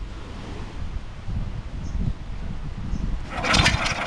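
Recoil starter cord of a small petrol boat engine yanked hard about three seconds in, a short whirring rasp as the engine cranks over but does not catch. A failed start on an engine the locals are trying to repair, with low knocking and handling noise before it.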